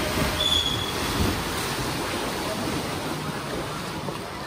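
Butterfly swimmers splashing through the water in a race, with spectators shouting and cheering, echoing in an indoor pool hall. A brief shrill high call cuts through about half a second in, and the splashing eases toward the end.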